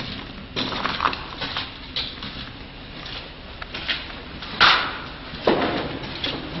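Footsteps on a tunnel floor: a handful of irregular scuffs and steps, the loudest a little past halfway through.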